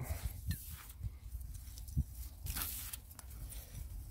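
Gloved hand scraping and pulling loose ashy soil away from a buried glass bottle: faint, irregular crunching and rustling, with a few small knocks, the sharpest about halfway through.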